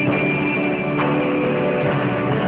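Live band music: piano chords played along with an electric guitar, with a new chord struck about a second in.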